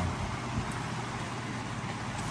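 Steady background noise with a low hum and hiss, no distinct events.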